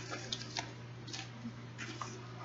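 A paper pamphlet being handled: a few light rustles and ticks about half a second apart, over a steady low hum.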